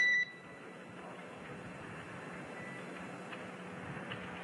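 A single short electronic beep right at the start, the tone of a radio communication loop as a transmission closes. It is followed by the steady hiss and low hum of the open audio feed.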